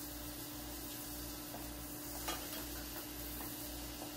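Butter foaming and sizzling in a stainless frying pan around a frying egg, with a steady hum underneath. A metal spoon clinks lightly against the pan about two seconds in.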